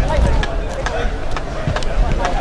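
Indistinct voices calling across an open sports ground, with wind rumbling on the microphone.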